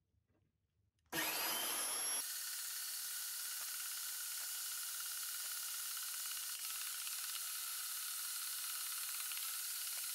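Vertical bandsaw starting up about a second in with a rising whine, then running steadily as its blade cuts through aluminum bar stock.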